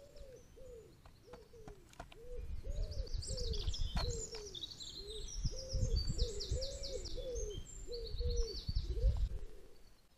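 A dove cooing over and over in short low calls, about one and a half a second, with a small songbird's quick high-pitched trills over it from about three seconds in to near the end, and a low rumble underneath.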